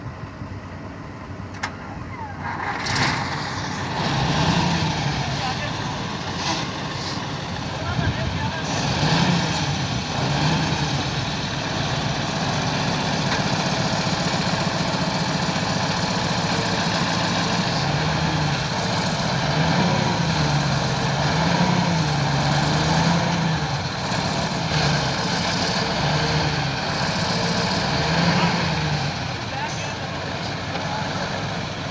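Diesel engine of a heavily loaded dump truck revving up and down repeatedly as it strains to pull free from soft ground where it is stuck. The sound swells about three seconds in, then surges and eases over and over.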